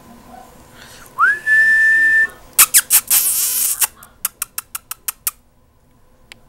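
A person whistling one note that slides up and then holds steady for about a second. It is followed by loud bursts of rustling noise and a quick run of about eight sharp clicks.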